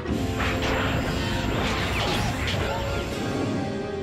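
Animated-action sound effects: a long crash of smashing debris over a dramatic music score, loudest in the first three seconds and then easing.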